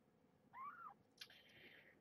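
A young kitten mews once, faintly: a short call that rises and falls in pitch about half a second in. A faint rustle follows.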